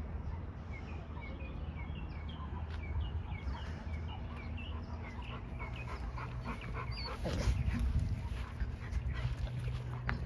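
Bully-breed dogs panting between bouts of rope tug-of-war, louder for a stretch about seven seconds in, with a run of short high chirps, about two a second, through the first half.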